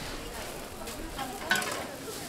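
Chive pancakes (buchujeon) sizzling in oil on a flat steel griddle, with a single sharp clank of the metal spatula against the griddle about one and a half seconds in.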